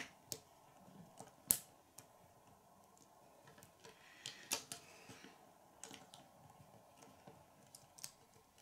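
Small plastic Lego pieces clicking and tapping as they are handled and pressed together on a minigun turret: scattered faint clicks, the sharpest about a second and a half in and a short run of them around four and a half seconds.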